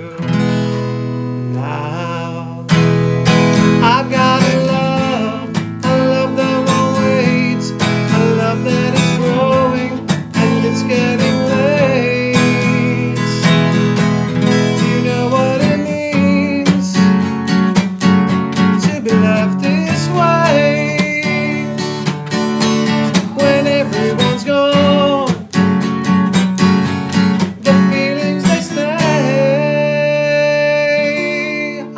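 Acoustic guitar strummed in a steady rhythm with a man singing over it. A held chord rings and fades for the first couple of seconds before the strumming comes back in loudly.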